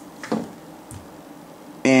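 Mostly a quiet room-tone pause in a man's talk, with a short vocal sound a third of a second in and speech resuming with the word "and" near the end.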